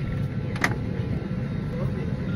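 Steady low background rumble, with one sharp click about two-thirds of a second in and faint voices.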